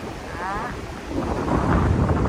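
Strong wind buffeting the microphone, a dense low rumble that grows louder in the second second. About half a second in, a short wavering high call sounds over it.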